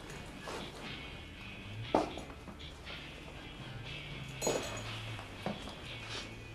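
Quiet film score with low held notes, broken by a few sharp knocks. The loudest knock comes about two seconds in, and two smaller ones come near the end.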